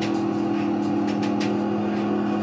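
Live improvised electronic drone music: two steady low tones held together, the lower one swelling in at the start, with short scratchy crackles flickering over the top.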